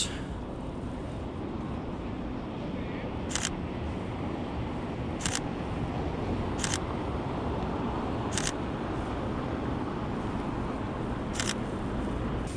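Sony A7R III mirrorless camera's mechanical shutter firing five single shots at irregular intervals, a few seconds apart. Beneath the clicks runs a steady hum of street traffic below.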